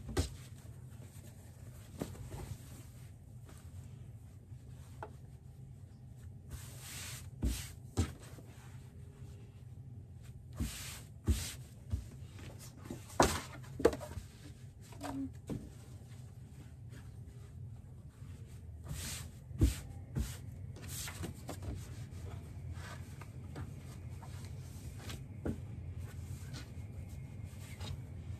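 Fabric rustling and a stiff cardboard comic book board tapping and sliding on a cutting mat as fabric is folded around it: scattered light taps and brief swishes over a steady low hum.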